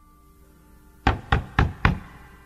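Four quick, evenly spaced knocks on a front door, about a second in.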